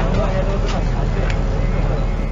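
Steady low rumble of a city bus engine and running gear heard from inside the passenger cabin, with voices talking over it.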